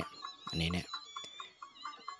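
A man's voice in two short bursts, over a faint background with short repeated tones.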